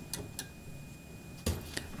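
Quiet room tone with a steady faint hum and a few scattered faint clicks, the loudest a soft thump about one and a half seconds in.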